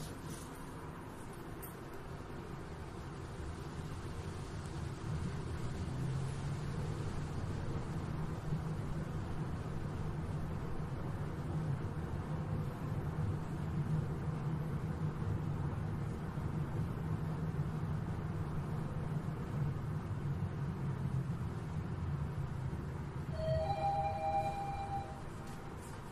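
High-speed lift car descending through its shaft: a steady low hum and rushing rumble that builds over the first few seconds as the car speeds up, then holds. Near the end, as the car reaches the ground floor, a short two-note arrival chime sounds.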